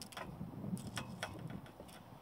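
Several light, sharp clicks and ticks, irregularly spaced, from a carbon fishing pole being handled and drawn back, over a low wind rumble on the microphone.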